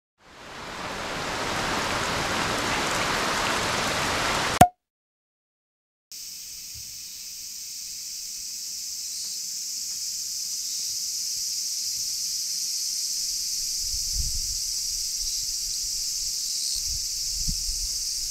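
Steady rain-like noise that ends abruptly in a click after about four and a half seconds. After a second and a half of silence, a steady high-pitched insect chorus, typical of cicadas in summer, runs on with a few low bumps near the end.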